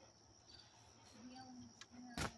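Near silence, with a faint, steady high-pitched trill of crickets.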